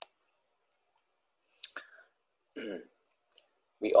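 Close-miked mouth noises from a man about to speak, between stretches of dead silence: a sharp click at the start, a lip smack with a breath about one and a half seconds in, and a brief voiced throat sound a second later. He starts speaking near the end.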